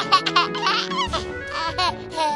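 A baby laughing in several short runs over background music.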